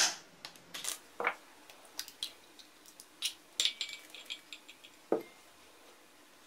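Scattered light clinks and taps of a kitchen knife, eggshell and glass and ceramic dishes handled on a tabletop as an egg is cracked and emptied into a mixing bowl. A quick run of small ticks comes about four seconds in, and a duller knock follows about a second later.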